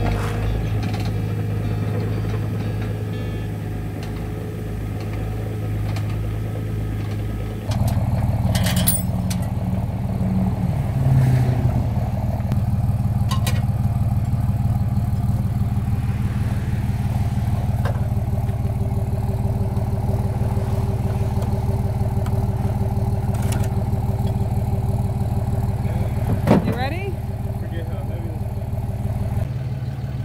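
Mini excavator's engine running steadily for the first eight seconds or so. It then gives way abruptly to a pickup truck's engine idling steadily.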